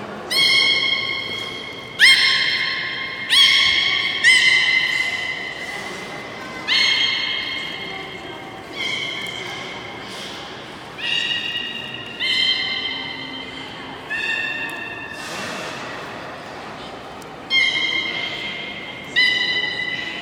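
A beluga whale calling above the water: a series of about a dozen high-pitched calls, each starting suddenly and fading out over a second or so, with a ringing echo from the hall.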